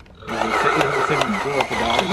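Battery-powered dinosaur monster-truck toy playing its electronic sound effect through its small speaker, a growling roar with engine noise, starting about a quarter second in after its button is pressed. It plays a sound effect, not a song.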